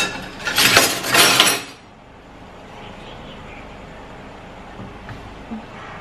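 A short burst of clattering and scraping, about a second and a half long, as a lemon and a stainless-steel flat grater are handled on a plastic cutting board. After it comes steady low room noise.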